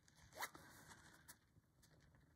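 Faint, brief scratchy stroke of a FriXion pen drawing on calico laid over a paper pattern, about half a second in, followed by a few fainter pen scratches.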